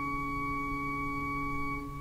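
Pipe organ of the Salt Lake Tabernacle holding a soft sustained chord of several notes. Most of the notes are released near the end and the sound fades away.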